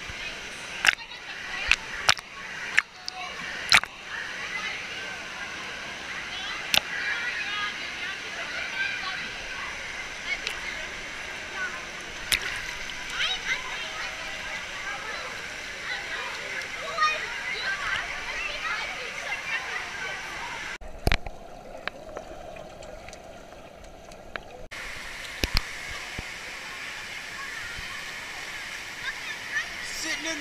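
Pool water sloshing and lapping against a GoPro held at the waterline, with scattered sharp splashes in the first few seconds, over the steady chatter of a crowd echoing in an indoor waterpark hall. Past the twenty-second mark the sound goes muffled for about four seconds.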